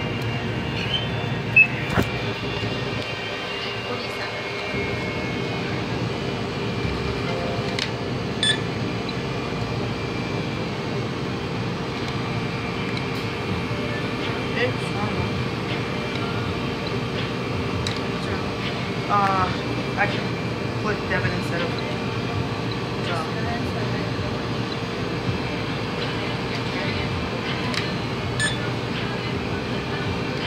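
Shop interior ambience: a steady hum with other people's voices in the background and a few short clicks and knocks.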